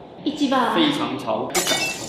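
A man's voice speaking briefly, then about one and a half seconds in a sudden sharp crash with a ringing tail, an edited-in sound effect.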